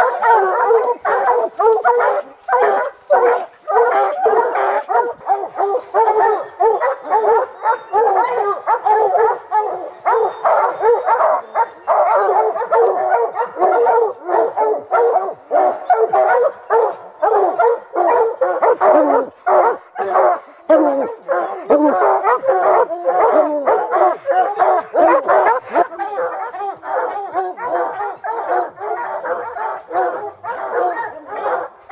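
Bear hounds baying and barking without a break at the foot of a tree, several voices overlapping. It is the tree bark that hounds give once they have a black bear treed.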